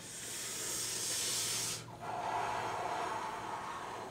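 A person's long, deep breath, in two parts: a high hiss for about two seconds, then a lower, breathier stretch for about two seconds.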